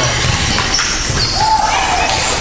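Echoing hall din of small electric RC cars racing: short, high, thin motor whines come and go as cars pass, over a steady wash of noise with a few low thuds.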